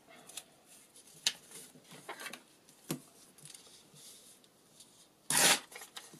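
Paper scraps being handled and shuffled, with scattered light rustles and taps and one louder, short rasping rustle about five seconds in.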